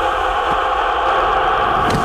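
A loud, steady rushing sound effect that holds evenly and cuts off suddenly near the end.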